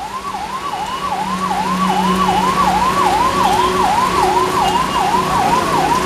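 A siren wailing in a rapid up-and-down sweep, about three cycles a second, without a break, over the steady hiss of heavy rain.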